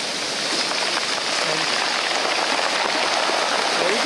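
Shallow ocean surf washing over the beach: a steady hiss of foaming water.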